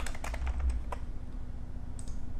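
Typing on a computer keyboard: a quick run of keystrokes through the first second, then it stops.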